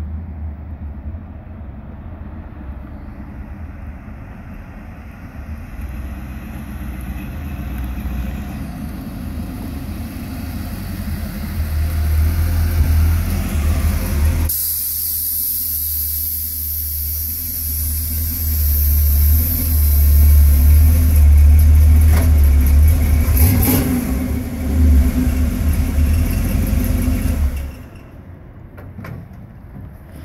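The Chevrolet 350 small-block V8 of a 1966 Ford F100 rat rod, running with a deep exhaust rumble that grows louder as the truck drives up and pulls alongside. The sound cuts off suddenly near the end.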